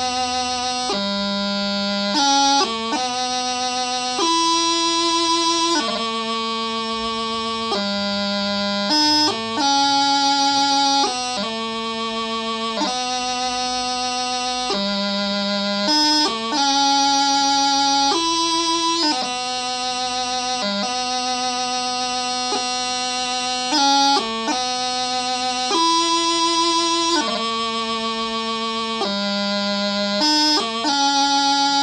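Highland bagpipe practice chanter playing a slow piobaireachd melody without drones: held notes of about one to two seconds each, separated by quick grace-note cuts.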